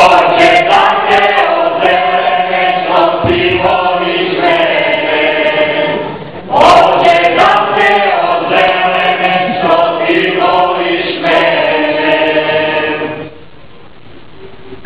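A group of voices singing a Serbian folk song unaccompanied, in two long phrases with a short break about six and a half seconds in; the singing stops about a second before the end, with sharp taps scattered through it.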